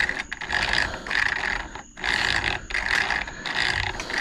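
Rear wheel of a Losi Promoto-MX RC motorcycle turned by hand, driving the chain, gears, slipper clutch and electric motor with a rough whir. It comes in a run of short pushes, each a little under a second.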